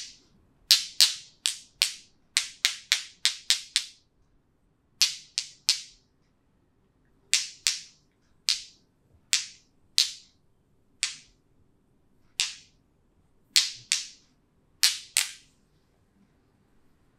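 Sharp finger snaps from a masseuse's hands during a head and face massage, about two dozen in all, coming in quick runs of several snaps with short pauses between.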